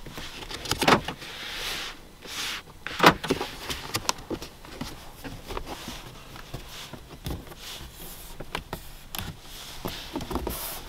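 Hands pressing and knocking on the front door's interior trim of a 2022 Lexus ES 350, on the window-switch panel, the door card and the top of the door, while checking it for creaks and rattles. A string of clicks and knocks, the two loudest about a second and three seconds in, then lighter ticks.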